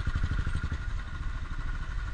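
Motorcycle engine running steadily at low speed, a rapid even run of exhaust pulses, heard from the rider's seat as the bike rolls along a rough dirt track.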